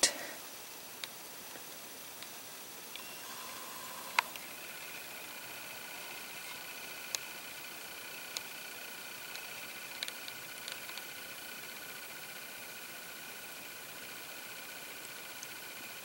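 Quiet room tone: a steady faint hiss with a thin high steady whine from about four seconds in, and a few small clicks, the sharpest about four seconds in.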